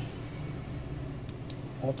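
Quiet room tone with a steady low hum, broken by two faint, short clicks about a second and a half in.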